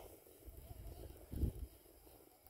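Faint low rumble of wind buffeting the microphone, swelling briefly about one and a half seconds in.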